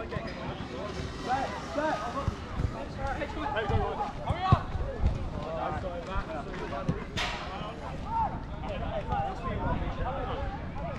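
Footballers' voices calling and shouting across an outdoor five-a-side pitch, with several sharp knocks of a football being kicked; the loudest knock comes about four and a half seconds in.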